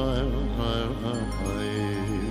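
Male vocalist singing a Kurdish mawal: a free-rhythm, melismatic vocal line with wavering ornaments over a steady sustained accompaniment. The voice eases off about a second in, leaving the held accompaniment.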